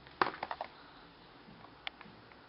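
Small hands tapping on a plastic high-chair tray: a quick run of sharp taps shortly after the start, then a single click near the end.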